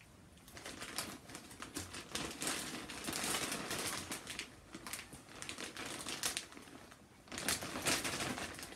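Large plastic popcorn bag crinkling and rustling as it is handled and shaken, a dense run of crackles with a short lull near the end before it picks up again.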